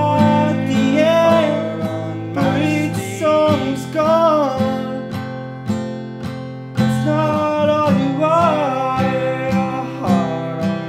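Acoustic guitar strummed in a steady rhythm, with a man's singing voice rising and falling over it in a few held phrases.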